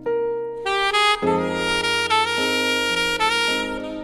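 Instrumental saxophone and piano music: a saxophone plays a slow melody of held notes over a sustained piano accompaniment.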